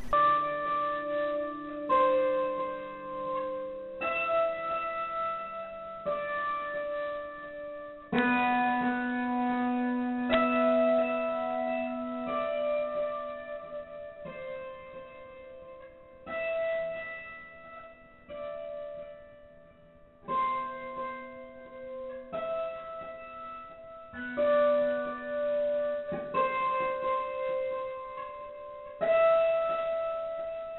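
Slow piano music: a chord struck about every two seconds and left to ring and fade before the next.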